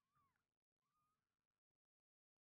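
Near silence: the audio is at the digital floor.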